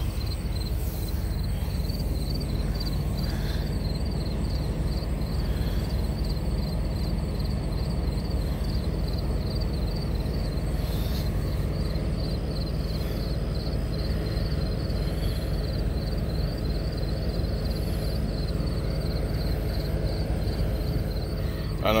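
Semi truck's diesel engine running steadily at idle, a constant low rumble, during a trailer light check.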